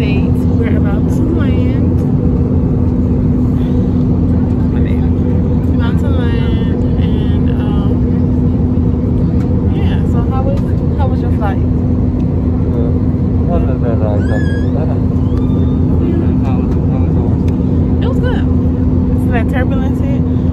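Jet airliner cabin noise: a steady low roar with a constant hum that does not change, and faint voices over it.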